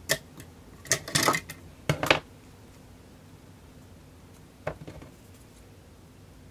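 Short clicks and rustles of a small cardstock die cut being handled and a pair of craft scissors being picked up at a table: a few quick bursts in the first two seconds, then one more cluster about five seconds in.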